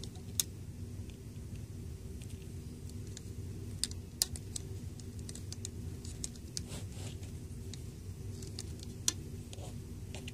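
Scattered light clicks and taps of fingers and rubber loom bands against the plastic pins of a Rainbow Loom as bands are stretched across it, with a few sharper snaps, over a steady low hum.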